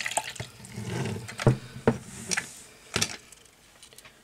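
Hot water poured into a small plastic mini washing machine for beauty blenders, running for about the first two and a half seconds, with a few sharp plastic knocks as it is handled.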